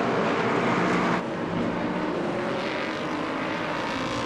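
Engine noise from LMP2 prototype race cars with Gibson V8 engines, a steady drone of several pitches with a hiss on top. About a second in, the sound changes abruptly: the hiss drops away and a steady engine note carries on.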